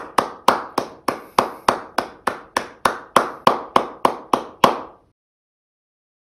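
One person clapping hands steadily, about three claps a second, seventeen claps in all, stopping about five seconds in.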